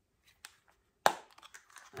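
A hard plastic pill organizer being handled: one sharp click of a lid snapping about a second in, followed by a few faint plastic clicks and rubs.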